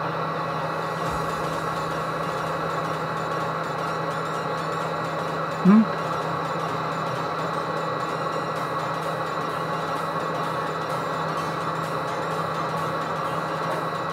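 A steady, even background hum with several faint steady whining tones, unchanged throughout, broken once about six seconds in by a short hummed "mm?".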